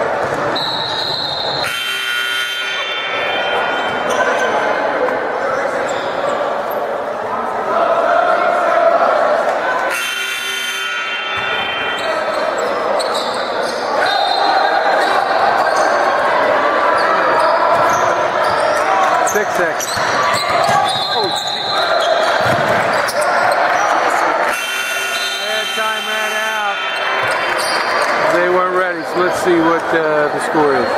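A basketball being dribbled on a hardwood gym floor during a game, with voices around the court and the whole sound echoing in the large hall.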